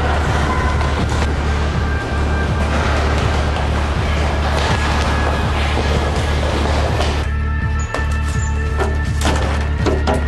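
Background music with a heavy, steady bass; about seven seconds in it thins out, and near the end a run of sharp, evenly repeating strikes comes in.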